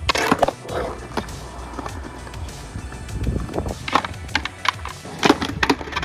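Skateboard rolling on concrete, with sharp clacks of the board hitting the ground: one right at the start and a cluster from about four to six seconds in.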